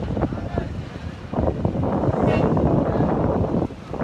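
Wind buffeting the phone's microphone: a rough rushing rumble that swells about a second and a half in and drops away shortly before the end.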